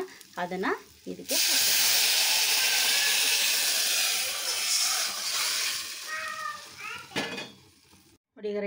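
A loud sizzle as a hot oil tempering of garlic, green chillies, curry leaves and cumin is poured into the pot of tomato rasam. It starts abruptly about a second in and dies away slowly over several seconds.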